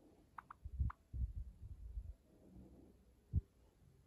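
Several low, dull thumps, the sharpest about three and a half seconds in, with three brief faint peeps from a white Java sparrow perched on a hand in the first second.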